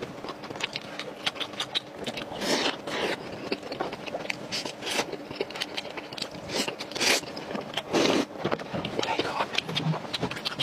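Close-miked chewing and mouth sounds of someone eating a soft steamed bun (baozi): wet smacks and clicks at irregular intervals, with a few louder ones about five, seven and eight seconds in.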